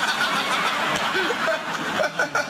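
Studio audience laughing and clapping after a punchline, a dense, steady wash of crowd noise.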